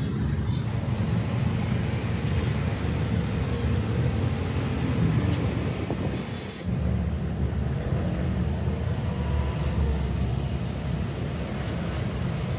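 A jeepney's engine running with road noise, heard from inside the open passenger cabin while it drives in traffic: a steady low rumble, with a brief dip about six and a half seconds in.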